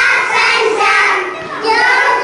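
A group of young children singing together into a microphone.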